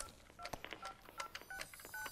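A faint run of about six short electronic beeps, evenly spaced at about two a second, each one a pair of tones like telephone keypad tones.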